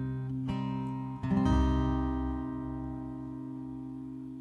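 Acoustic guitar strummed twice, then a last chord struck about a second and a half in that is left to ring and slowly fades, closing the song.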